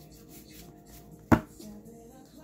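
A single sharp knock just past the middle, a stack of index cards being tapped square against the table top while shuffling. Faint music plays underneath.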